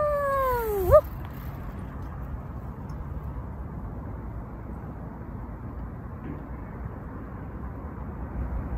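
Steady wind and rolling noise from riding along a paved bike path. In the first second it is topped by a short, high, meow-like vocal cry that dips and then sweeps up.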